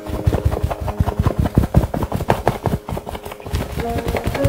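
Quick, irregular taps and scrapes of a painting tool dabbing acrylic paint onto a stretched canvas, several strokes a second.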